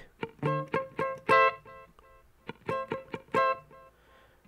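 Ibanez electric guitar on a clean tone with a very slight overdrive, playing a palm-muted A minor chord high on the neck (14–13–12 on the top three strings) in short rhythmic stabs, two groups with a pause near the middle. The first string is let ring a little more openly than the muted lower strings.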